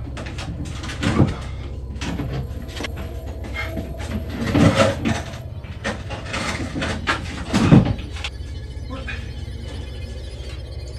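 A steady low hum, with knocking and scraping about a second in, near the middle, and again near the end.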